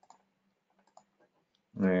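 A few faint computer mouse clicks: a couple right at the start and another about a second in.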